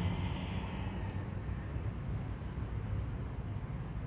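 Steady low background rumble of room noise, with a faint hiss that fades during the first second.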